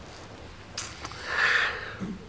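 A person sniffing, drawing a breath in through the nose. The hiss starts a little before halfway, swells and fades over about a second.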